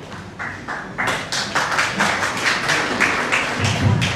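Audience applauding: a few scattered claps, then thicker clapping from about a second in. A low thump comes near the end.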